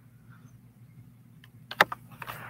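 Quiet room tone, then a quick cluster of sharp clicks near the end, the loudest about 1.8 seconds in.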